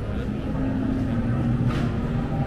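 A steady low mechanical hum, with people talking in the background and a brief hiss near the end.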